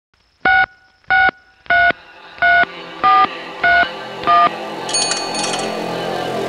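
Opening of an electronic remix track: seven short, loud electronic beeps like telephone dialing tones, evenly spaced about 0.6 s apart and changing pitch slightly. A sustained synth pad swells in under them, and a high chiming figure enters near the end.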